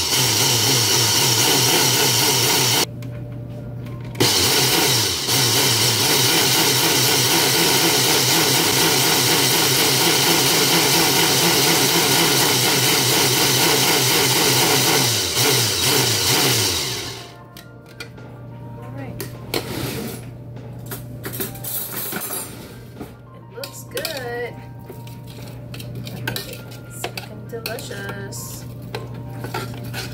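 Food processor motor running loud and steady as it purees greens, garlic and olive oil into pesto, with a short pause about three seconds in. It shuts off about 17 seconds in, followed by light clinks of a utensil against the plastic bowl.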